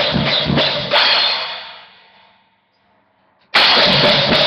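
Drum kit playing a fast punk beat, then a last hit rings out and fades away over about a second and a half, like a cymbal decaying. After a second of silence the full kit comes back in suddenly, near the end.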